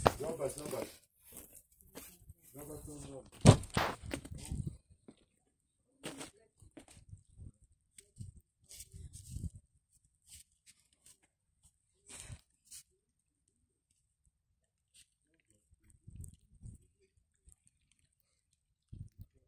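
A person's voice briefly at the start and again a few seconds in, then mostly quiet with scattered faint crunches and rustles as a dog sniffs and steps through a thin layer of fresh snow.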